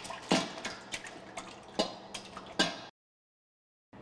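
Raw eggs poured from a glass bowl into a stainless steel mixer bowl holding water: a few separate wet plops and knocks against the metal over a faint splashing. The sound cuts to dead silence about three seconds in.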